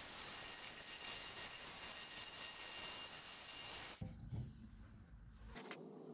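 Jigsaw cutting through a thick block of ziricote, a steady rasping hiss that drops away about four seconds in.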